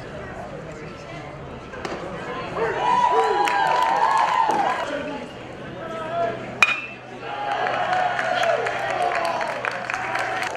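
Spectators talking and calling out, then about two-thirds of the way in a single sharp crack of a metal baseball bat hitting the pitch. The crowd voices grow louder right after it.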